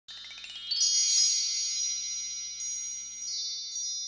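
Intro logo sting of chime-like tones: a quick rising sweep, then a cluster of high bell-like notes ringing on with a few light tinkling strikes, slowly fading away.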